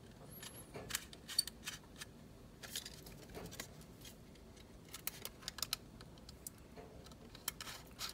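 Small Phillips screwdriver turning screws into a 2.5-inch solid-state drive through its metal drive bracket, with the bracket and drive handled in between. The result is scattered light metallic clicks and ticks, some in quick clusters.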